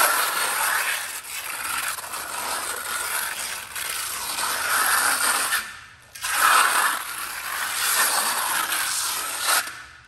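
Steel hand trowel scraping and smoothing wet fast-setting cement patch over a concrete floor in repeated sweeping strokes. The sound breaks off briefly about six seconds in and again just before the end.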